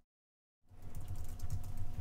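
Typing on a computer keyboard: a quick run of keystrokes that starts about two-thirds of a second in, after a moment of dead silence.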